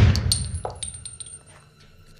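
The tail of a burst of pistol fire dies away, followed by a few light metallic clinks of spent shell casings dropping. A faint high ringing runs under the clinks as the sound fades.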